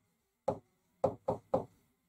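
A pen tapping against a writing board as letters are written: four short knocks, the last three in quick succession.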